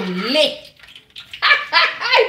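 A woman's excited cries of "aïe" with laughter: her voice slides down and back up at the start, then a second loud burst near the end.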